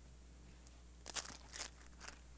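Two short papery rustles about a second in, half a second apart: Bible pages being turned on a lectern, over a faint steady low hum.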